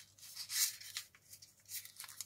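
A square of memo-block paper being folded and tucked by hand: short rustles and creases of paper, loudest about half a second in.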